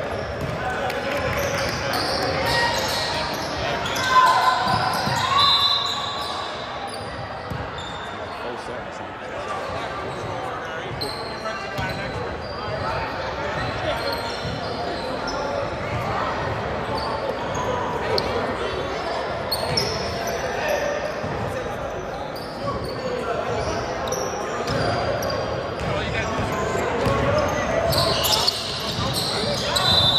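Basketball game sounds in an echoing gym: a ball bouncing on the hardwood floor and indistinct voices of players and spectators, with a sharp thud about four seconds in.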